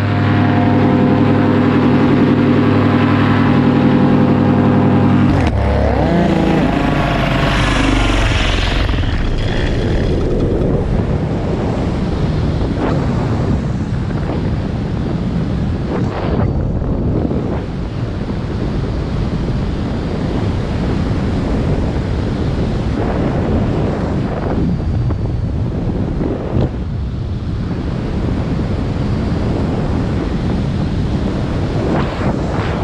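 Vittorazi Moster two-stroke paramotor engine and propeller running in flight, holding a steady pitch for the first five seconds or so, then shifting in pitch between about five and nine seconds in. After that it blends into a loud rush of wind over the microphone.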